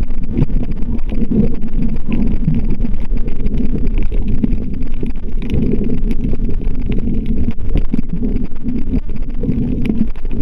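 Muffled, steady low rumble of water moving around an underwater camera as it is carried along, with scattered faint clicks.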